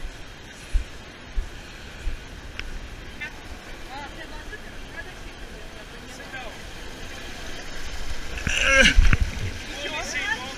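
Steady rush of water running down the lanes of a fibreglass water slide, with a few low thumps in the first two seconds. Loud voices break in near the end.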